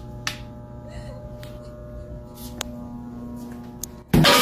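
A steady low droning hum of several held tones, with a few sharp isolated clicks: about a quarter second in, near one and a half seconds, and two more later.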